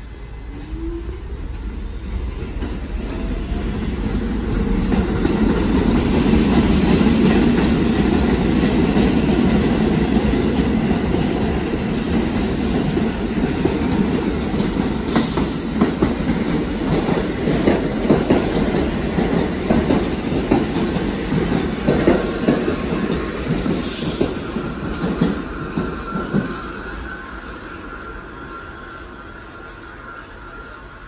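New York City Subway train running past on the open-cut tracks: a loud rumble that builds over the first few seconds, with wheels clacking over rail joints. Near the end a thin wheel squeal comes in as the rumble fades.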